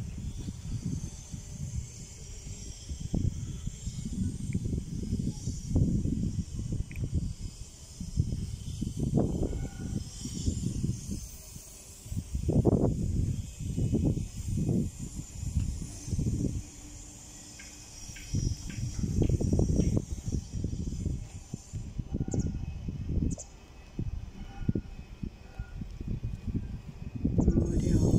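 Wind buffeting the microphone in irregular low gusts, with a faint steady high hiss behind it.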